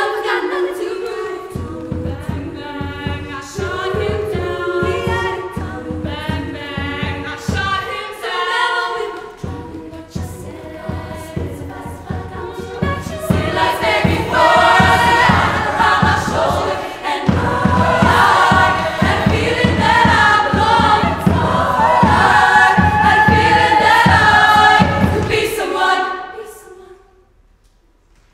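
Women's choir singing an upbeat song over a steady, regular low beat. The sound grows fuller and louder about halfway through, and the singing stops together at the very end.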